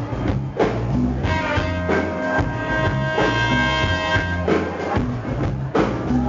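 Live soul band playing an instrumental passage: drum kit, bass and electric guitar under held chords, with no voice yet.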